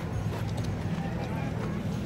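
Outdoor promenade background: faint voices of passers-by over a steady low hum.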